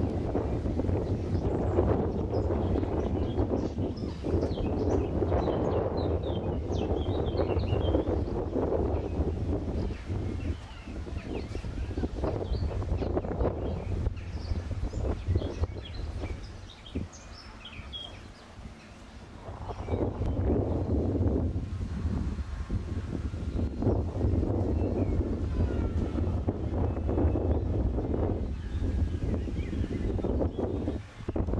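Wind buffeting the camera microphone in a steady low rumble that eases off briefly about halfway through, with faint bird chirps in the background.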